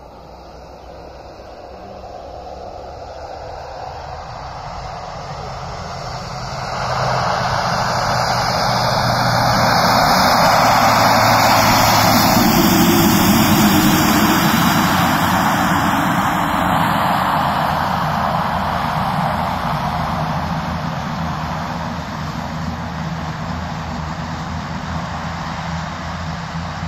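The twin turboprop engines of a PZL M-28 Skytruck running at high power as it moves along the runway. The sound swells, rises sharply about seven seconds in, is loudest around ten to fifteen seconds in, then slowly fades as the aircraft passes and moves away.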